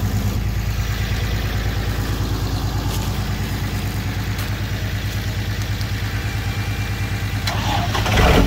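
A truck engine idling steadily, with an even low throb.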